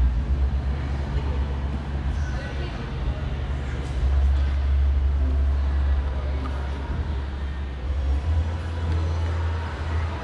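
A steady low rumble with faint, indistinct voices in the background; the rumble grows louder from about four seconds in for a couple of seconds, and again near the end.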